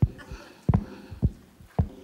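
A foot patting a steady beat on an amplified stomp box, coming through the PA as four low thumps a little over half a second apart. It is louder in the mix than the player wants.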